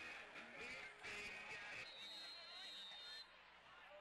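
Faint voices and music in the background. About halfway through comes a steady high whistle blast lasting over a second, the kind a referee blows to mark the ball ready for the kickoff.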